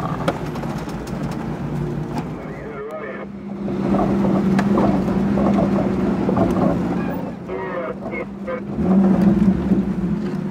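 Jeep engine running at low speed while crawling off-road. The engine note changes about three seconds in, and indistinct voices come in over it.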